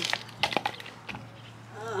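A few short knocks and scrapes in the first second or so as clay garden soil is worked by a gloved hand, then quieter.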